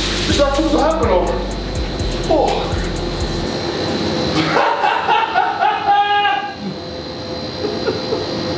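Water overflowing the rim of a cold-plunge tub and splashing onto the floor, under voices and laughter. A low hum stops about three and a half seconds in.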